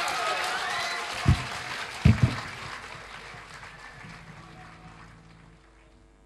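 Audience applauding and cheering as a song ends, with a few voices calling out early on; the applause dies away over about five seconds. Two or three loud, dull low thumps come about one and two seconds in.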